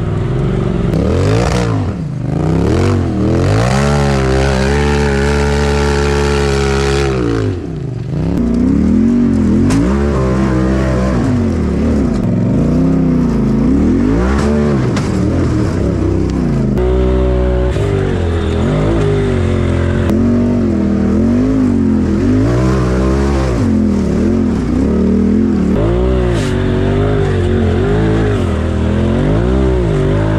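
Side-by-side UTV engine revving up and down over and over under throttle while crawling a rocky trail, held at higher revs for a few seconds near the start before dropping off.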